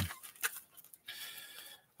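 Faint rustling and crinkling of loose plastic shrink wrap and cardboard as a trading-card hobby box is handled, with a light tick about half a second in.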